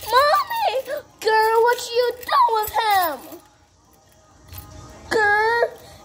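A high-pitched, squeaky voice in short bursts of wordless babble with swooping pitch, like a toy character's voice; it pauses for a second and a half midway, then gives one more short call near the end.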